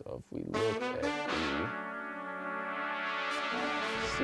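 Soloed funk horn section from a sampler, trumpets and trombones, playing back: a few short stabs and a bending phrase, then a held brass chord of about two seconds that dies away near the end.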